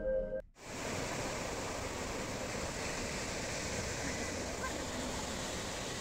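Music cuts off about half a second in, followed by a steady rushing wash of sea surf on the beach.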